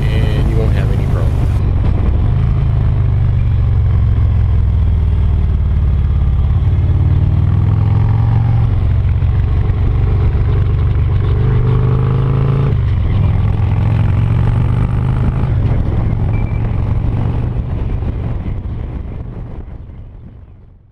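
Touring motorcycle engine running under way, heard from the bike, with wind and road noise. The revs climb twice, the second climb cutting off sharply about two-thirds of the way through as the throttle closes or a gear changes, and the sound fades out near the end.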